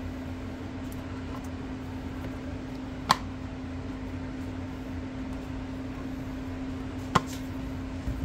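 Two sharp clicks about three seconds apart as a folding magnetic monitor cover is handled and flipped, over a steady low hum.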